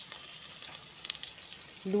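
Pieces of ginger frying in hot oil in an aluminium pot: a steady sizzle with scattered small crackles.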